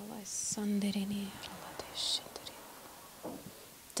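A woman whispering softly into a handheld microphone, half-voiced and mostly in the first half, with sharp hissing s-sounds.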